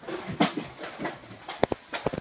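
A few short knocks and clicks from people scuffling, with two sharp ones in quick succession about three-quarters of the way in.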